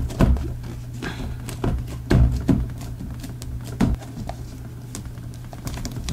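Hands pressing and handling glued paper and book board inside a book-cover purse: irregular soft taps, rustles and light knocks, a few of them louder, over a low steady hum.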